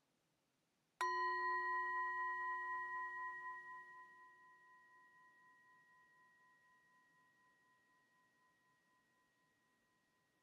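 A hand-held metal singing bowl struck once about a second in, ringing with several clear tones that slowly die away, the highest fading first and the middle tone wavering slightly. It is the bell that rings in a silent meditation.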